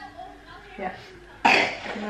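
A person coughing once, a sudden harsh burst about one and a half seconds in, amid quiet talk.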